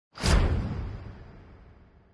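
Whoosh sound effect of a news-bulletin logo intro, with a deep low end: it swells suddenly just after the start and fades away over about two seconds.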